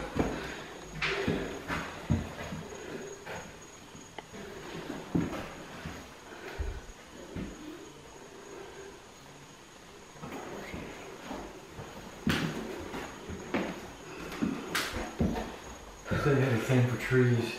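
Irregular footsteps and soft shuffles on a bare floor, with occasional sharper knocks from handling, as someone walks through an empty house. It is quietest about halfway through.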